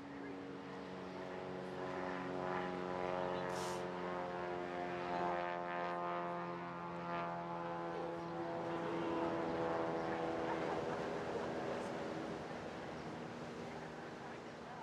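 A droning engine: a steady hum with many overtones that swells, is loudest a little past the middle and fades toward the end.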